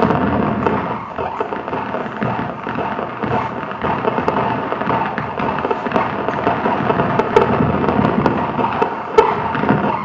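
Muscle (EMG) signals from electrodes on a performer's arms, played back as sound: a dense crackle of clicks and pops over a steady hum, with sharper transients as he tightens his muscles.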